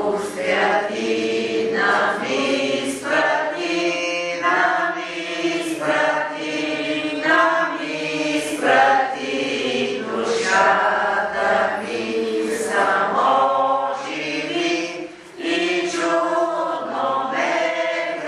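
A group of voices singing a hymn in held, slow phrases, with a brief break about fifteen seconds in.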